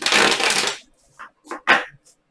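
Tarot cards riffle-shuffled on a tabletop: a loud, dense rustle of cards falling together for under a second, then a few short card rustles as the deck is gathered.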